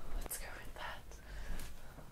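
A person whispering softly: a few short breathy whispers with no pitched voice.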